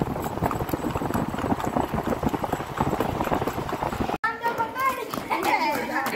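A horse's hooves clip-clopping in rapid strikes as it is ridden at speed. About four seconds in the sound cuts sharply, and people's voices and calls follow.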